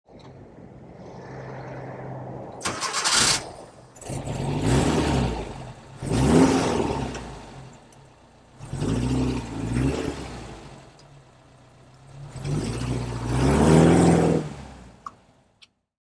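1975 Porsche 914's 1.8-litre air-cooled flat-four idling and blipped through four or five revs, each rising and falling back to idle, the last one the longest. A brief noisy burst comes about three seconds in.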